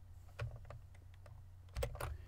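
A few scattered keystrokes on a computer keyboard, with the loudest pair near the end, over a faint low hum.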